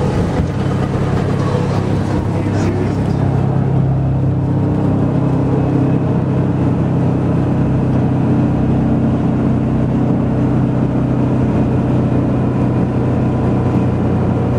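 Steady low engine drone and road noise inside the cabin of a moving 1958 Silver Eagle bus converted to a motorhome, its diesel running at an even cruising speed.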